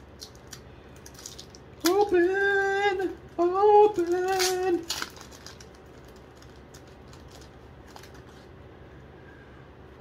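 A voice singing or humming three held notes at a steady, fairly high pitch, about two to five seconds in. Around them, faint clicks and rustles of cards and packaging being handled.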